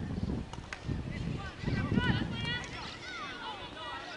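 Distant shouts and calls of field hockey players across the pitch, too far off to make out, with the clearest call about two and a half seconds in. A low rumble runs under them, loudest about two seconds in.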